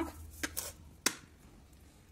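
A few light clicks of a metal spoon against a dish as a spoonful of black salt is taken: two soft clicks about half a second in and a sharper one about a second in.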